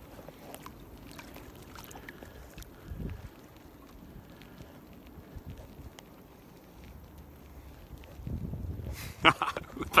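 Faint handling noise from a phone being fumbled with cold, numb fingers while trying to stop the recording: scattered small taps and a low rumble that grows louder near the end, followed by a short laugh.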